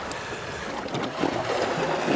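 Sea water churning and splashing close beside the boat as a hooked kingfish is brought to the surface, with wind on the microphone.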